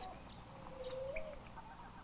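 Faint bird calls: a few short high chirps and a drawn-out lower note.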